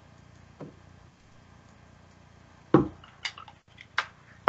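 Handling noise over a faint steady hum: a few sharp knocks and clicks as a hot glue gun and craft pieces are picked up and moved on a tabletop, the loudest knock coming a little under three seconds in.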